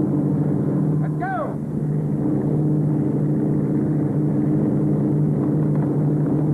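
Engine running with a steady, even drone. About a second in, a brief pitched call rises and falls over it.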